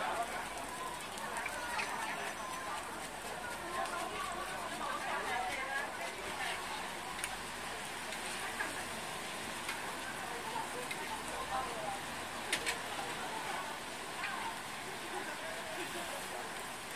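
Steady background chatter of a market crowd over a griddle sizzling as sorghum and sticky-rice cakes fry in oil, with a few sharp clicks from the metal spatula and press on the iron plate.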